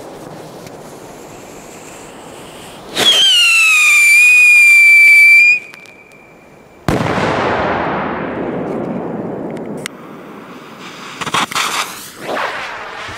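Whistle-and-explosion firecracker: about three seconds in a loud whistle starts, drops quickly in pitch and holds steady for about two and a half seconds, then it cuts off and a sharp bang follows about seven seconds in, with a long echo that dies away over several seconds. A few faint clicks come near the end.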